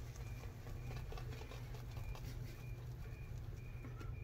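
Badger-hair shaving brush working soap lather onto the neck and cheek: a faint, fast, wet patter of brush strokes against the skin.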